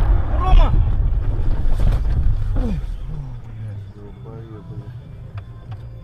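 Car cabin noise picked up by a dashcam as the car slides out of control on a snowy road: a loud rumble of road and wind noise that dies down after about three seconds, with voices in the cabin.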